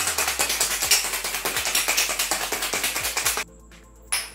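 Ice cubes rattling hard inside a stainless steel cocktail shaker being shaken vigorously, a fast continuous clatter that stops abruptly about three and a half seconds in. Soft background music runs underneath.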